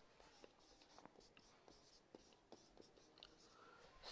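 Faint marker writing on a whiteboard: a handful of light, short strokes as a few letters are written.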